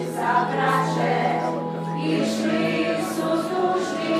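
A congregation singing a hymn together, many voices at once, over a held low accompanying note that steps up in pitch about two seconds in.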